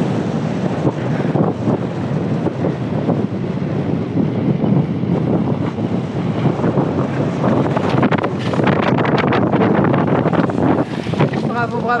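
Strong wind buffeting the microphone over the low running of a 4x4 vehicle as it drives across a mound of dirt and rocks on the track.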